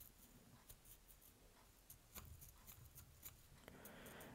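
Near silence with faint, scattered rustles and ticks: synthetic angel-hair tinsel fibres of a streamer's tail being crumpled between fingertips.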